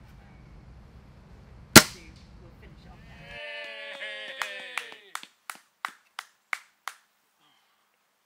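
A single air rifle shot about two seconds in, a sharp crack and the loudest sound. Then laughter and a run of about eight even claps, roughly three a second.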